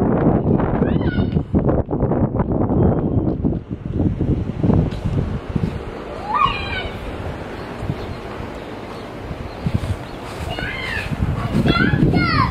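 A young child's short, high-pitched squeals: one about a second in, one midway, and two near the end. They sit over a low rumble that is heavy for the first half and then eases.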